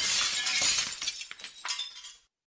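Glass-shattering sound effect: a crash of breaking glass, loudest at first, with tinkling pieces dying away over about two seconds.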